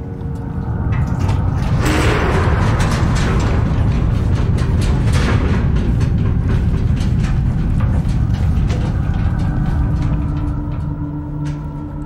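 Deep, loud rumble from a film soundtrack, with a noisy surge about two seconds in and another around five seconds. Faint steady music tones come in near the end.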